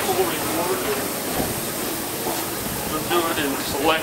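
Steady rushing hiss under indistinct voices, with a short spoken word at the very end.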